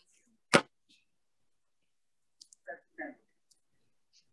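A single sharp knock about half a second in, followed about two seconds later by a brief, faint murmur of a voice; between them the video-call audio drops to silence.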